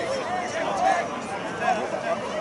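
Several overlapping voices of rugby players and sideline spectators, calling out and talking too indistinctly to make out words.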